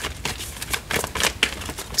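A deck of tarot cards being shuffled by hand, the card edges giving a quick, irregular run of crisp clicks and slaps, several a second.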